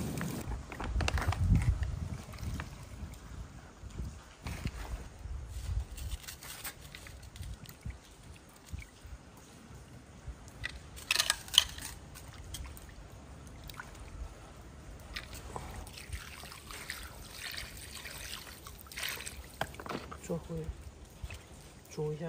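Water sloshing and trickling as raw pork rib pieces are rinsed by hand in a pan of water, with a few short knocks of cookware and utensils, the loudest about halfway through.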